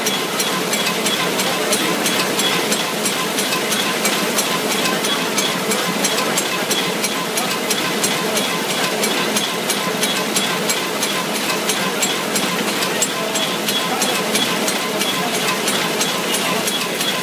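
Roll-fed square-bottom paper bag making machine running at production speed: a loud, steady mechanical clatter with fast, evenly spaced ticks.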